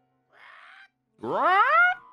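Anime soundtrack audio: a soft hiss, then a loud pitched sound that slides upward for under a second and cuts off sharply, like a cartoon sound effect or a rising cry.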